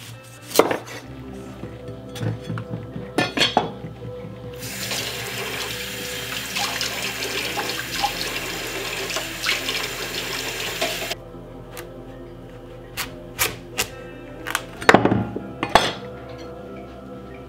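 A kitchen tap runs into a sink for about six seconds, then is shut off abruptly. Before and after it, a chef's knife knocks on a wooden butcher-block board as a butternut squash is cut.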